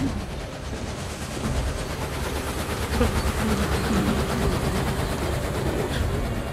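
Steady low mechanical rumble, like a train running on rails, in an animated film's sound mix.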